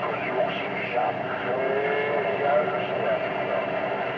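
A distant station's voice coming in on skip through a Stryker SR-955HP radio's speaker, thin and garbled, half-buried in steady static so no words come through clearly.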